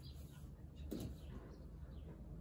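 Faint birds chirping in short calls over a steady low background hum, with a single sharp click about a second in.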